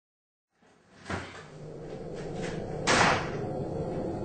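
Dead silence at a cut, then room noise with a steady hum fades in. A light knock comes about a second in and a louder, short bang near three seconds.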